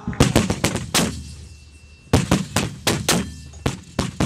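Two rapid bursts of sharp gunfire reports, each about five cracks in under a second, the first at the start and the second from about two seconds in.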